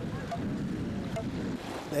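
Beach ambience: small waves washing on the shore, with wind on the microphone.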